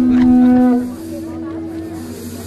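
A long, steady low horn-like tone from the light show's soundtrack, cutting off a little under a second in, with faint voices beneath it.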